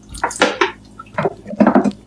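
Metal pots and kitchen utensils clattering: a quick series of sharp knocks and scrapes, the loudest cluster near the end.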